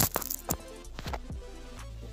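A few sharp handling clicks and knocks as a plug-in lavalier microphone is clipped on and connected, over steady background music.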